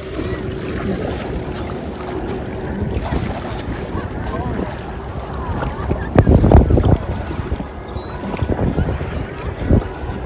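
Wind buffeting the microphone over water lapping and sloshing around a person wading with a seine net, with a stronger gust about six seconds in.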